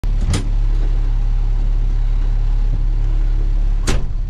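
Truck engine idling steadily, heard from inside the cab, with a short knock about a third of a second in and a louder thump just before the end.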